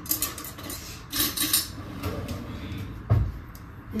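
Kitchen handling noises as ingredient containers are moved about on a countertop: light clatters and knocks, with a dull thump about three seconds in.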